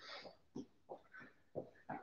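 A person jogging lightly on the spot: faint light footfalls and breaths, five or six short sounds in two seconds.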